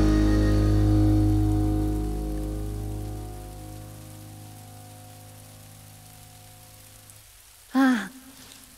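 The band's last chord on electric guitars and bass rings out and fades away over about four seconds, leaving the steady patter of rain. Just before the end, a short burst of a woman's voice.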